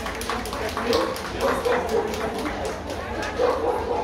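Dogs barking in a rapid run of short, sharp barks, a few each second, with people talking underneath.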